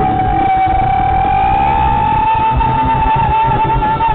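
Live rock band playing, with one long held high note that slowly rises in pitch and wavers near the end, over drums and bass.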